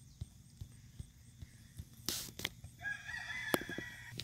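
Soft hoofbeats of a Tennessee Walking Horse gaiting on grass, with a short loud puff of noise about halfway through. A rooster crows over the last second or so.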